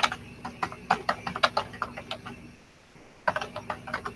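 Typing on a computer keyboard: a quick, uneven run of key clicks for about two and a half seconds, a short pause, then a brief burst of keystrokes near the end.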